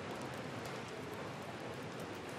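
Steady low background hiss of a café room's ambience, with a few faint ticks.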